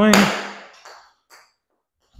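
Pitching wedge striking a golf ball off a hitting mat: one sharp crack at the start that dies away over about half a second. Two faint ticks follow about a second in, as the ball is caught in the net and drops to the concrete floor.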